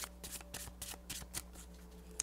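A deck of cards being shuffled by hand: a string of quick, light card clicks.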